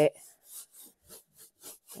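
Soft brush scrubbing briskly back and forth over gold leaf on a painted wood surface, about four short strokes a second. It is rubbing away the loose gold leaf where no size glue was applied, to reveal the stencilled design.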